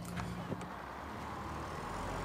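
School bus engine running steadily, with a couple of short knocks in the first half-second.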